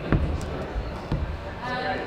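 Dull thuds of a climbing shoe being set onto the holds and plywood of an indoor bouldering wall as the climber steps up: one just after the start, another about a second in.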